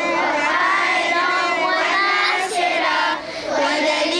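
A group of children singing together, many voices in unison, with a short break about three seconds in.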